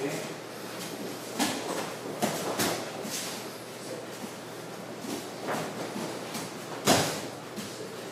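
Bare feet stepping and shuffling on padded training mats, with several short soft knocks and scuffs, the loudest about seven seconds in.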